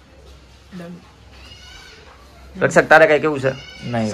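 Voices: a faint high-pitched voice in the middle, then a man's loud voice with a wavering pitch for over a second near the end.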